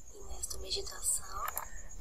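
A woman's soft voice, close to a whisper, narrating a bedtime story, played back quietly from a video on the computer.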